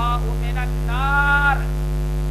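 Steady low electrical mains hum from the microphone and amplifier chain, running unchanged underneath a man's voice, which holds one drawn-out vowel about a second in.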